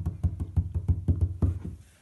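A toy egg with feet running across a surface: a quick, even run of light tapping clatters, several a second, that dies away near the end.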